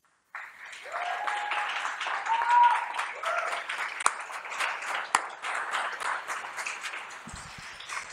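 Audience applauding at the end of a pitch. Many hands clap together, starting suddenly just after the start and thinning out towards the end.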